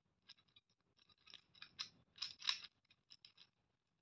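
Plastic Gear Cube puzzle being turned by hand: a quick series of faint plastic clicks and scratchy gear-teeth runs. The longest and loudest run comes about two and a half seconds in.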